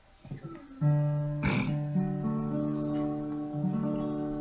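Acoustic guitar starting about a second in, strumming chords that ring on and change every second or so: the opening of a song's accompaniment.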